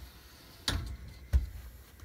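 Mirrored sliding closet door being slid along its track: two knocks about two-thirds of a second apart, the second a deeper thump.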